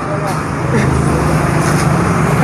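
Road traffic, with a vehicle engine's steady low hum.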